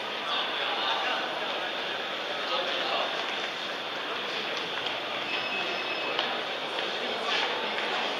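Indistinct chatter of a crowd echoing in a large hall, a steady hubbub of many voices with no words standing out. About five seconds in, a brief high steady electronic tone sounds for about a second.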